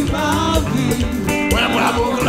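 Live Haitian Creole worship music: a lead voice singing into a microphone over a band with a steady beat and a bass line.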